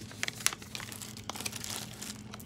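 Light rustling and crinkling handling noise, a scatter of small clicks and crackles.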